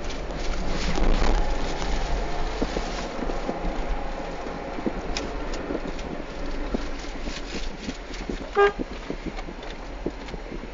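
Steady traffic and road noise with a low rumble, and one short car-horn toot about eight and a half seconds in, the loudest sound.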